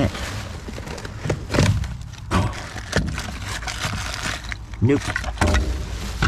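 Gloved hands rummaging through cardboard product boxes and a plastic bag on the floor of a steel dumpster: rustling and handling noise with a few sharp knocks and clatters. A steady low rumble runs underneath.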